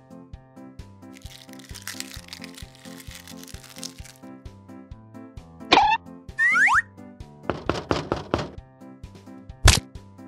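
Playful background music with a steady beat, overlaid with comic sound effects: a quick falling whistle-like glide about six seconds in, a cluster of falling glides just after, and a sharp thunk near the end.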